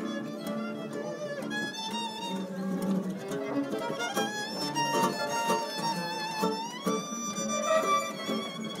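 Gypsy jazz on violin and acoustic guitars: the violin plays the melody with vibrato over the guitars' rhythm strumming. About seven seconds in, the violin slides up into a long held high note.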